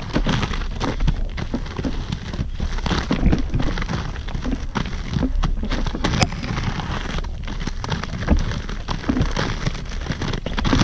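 Inline skate wheels rolling and grinding over a loose gravel road as the skater strides uphill: a steady gritty crunching with irregular crackles and small knocks.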